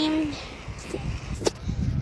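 The end of a boy's drawn-out word, then a low, uneven rumble on a handheld phone's microphone, with one sharp click about one and a half seconds in.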